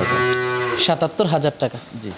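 Cow mooing: a long call at a steady pitch for most of a second, then shorter wavering calls.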